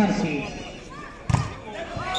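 A volleyball struck once by a player during a rally: a single sharp slap a little past halfway, amid shouting voices.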